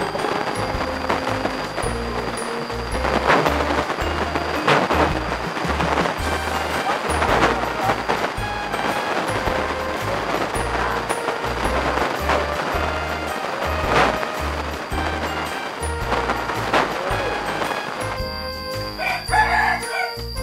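Background music with a steady, rhythmic bass beat, with a rooster crowing over it.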